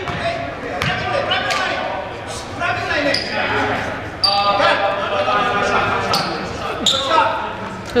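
A basketball bouncing on a hardwood gym floor, with sharp knocks at irregular intervals. Indistinct chatter from players and spectators runs underneath, echoing in the large gym.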